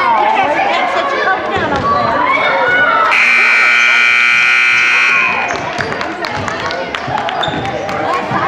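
Gym scoreboard buzzer sounding one steady blare for about two seconds, starting about three seconds in, over children's and spectators' chatter and shouts.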